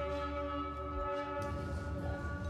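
A sustained, droning chord of steady tones over a low rumble, from the drama's musical score.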